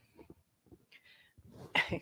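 A woman's soft breath and faint mouth clicks, then near the end a sudden breathy burst as she starts to laugh.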